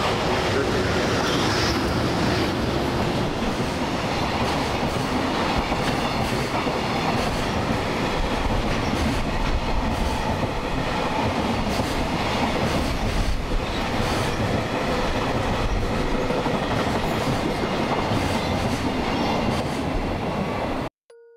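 A container freight train passing, hauled by an EH200 electric locomotive: the steady noise of the Koki container flatcars' wheels running on the rails as the wagons roll by.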